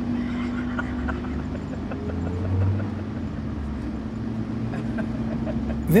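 Engine and road noise heard from inside a moving car's cabin: a steady low rumble with a steady engine hum.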